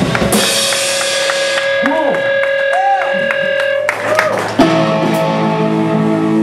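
Live rock band on electric guitars and drum kit, playing held and bending guitar notes, then a sudden loud hit about four and a half seconds in, followed by a sustained ringing guitar chord.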